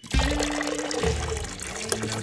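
Water pouring from a plastic watering can into a basin of water, over background music.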